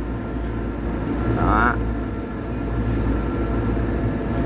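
A steady low mechanical hum runs throughout, with a brief distant voice about one and a half seconds in.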